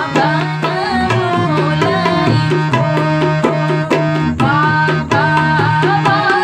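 A woman singing a bride's farewell (vidaai) wedding song to harmonium and tabla. The harmonium holds a steady drone under the melody while the tabla keeps a running rhythm of strokes.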